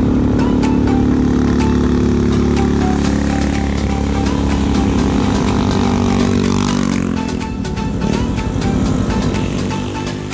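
Small motorcycle engines running, with a steady engine note that drops in pitch about six to seven seconds in as a motorcycle passes close by. Background music with a steady beat plays over it.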